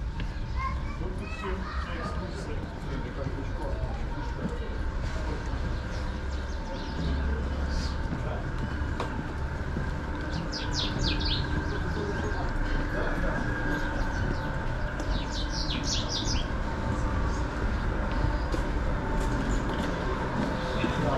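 Background sound of a narrow street walked through on foot: a steady low rumble with faint distant voices, and two short bursts of rapid high bird chirping, about halfway through and again a few seconds later.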